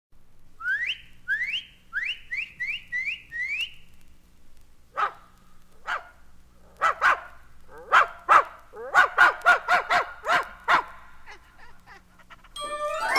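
A person whistling for a dog, six quick rising whistles, then a dog barking in reply: single barks at first, then a fast run of barks.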